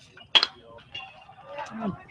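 A single sharp knock of a metal baseball bat striking the ball about half a second in, a weak contact that sends a slow roller toward first base. A man murmurs 'mm-hmm' near the end.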